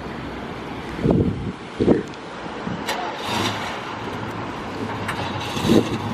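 Cars running at the roadside: another car drives past, with two short louder surges about one and two seconds in. From about halfway, a classic Ford Mustang's engine is started and settles into a steady low idle.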